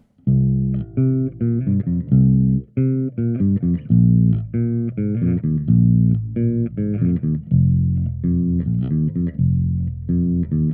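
Ernie Ball Music Man StingRay 5 five-string bass with active pickups, played through a Trace Elliot Elf 200-watt bass head: a quick riff of plucked bass notes, starting a moment in and running on without a break.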